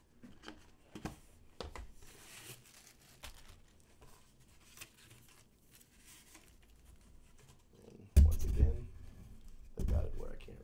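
Cardboard poster tubes and their cardboard box being handled: faint scattered scrapes and taps, then a sudden loud thump about eight seconds in.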